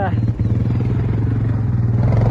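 ATV engine running close by, getting gradually louder as the four-wheeler comes nearer.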